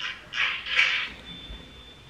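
A man exhaling sharply through his nose twice in quick succession, then a faint steady high-pitched whine.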